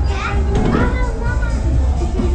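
High-pitched voices calling out excitedly over loud background music with a heavy, steady bass hum.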